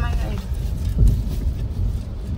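Car cabin noise: a steady low rumble of the engine and road heard from inside the car, with one louder thump about a second in.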